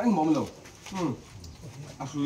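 A man's voice speaking in short phrases, each falling in pitch.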